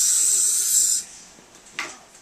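A dental air syringe blowing a steady, loud hiss of compressed air that cuts off abruptly about a second in, followed by a brief swish near the end.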